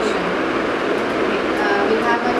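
Indistinct speech heard through a steady, loud wash of room noise, with the words not made out.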